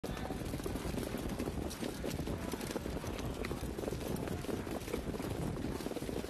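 Steady low rumbling racetrack ambience from the broadcast feed as the harness field follows the mobile starting gate, with no single sound standing out.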